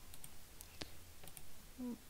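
A few faint, scattered clicks of a computer mouse and keyboard.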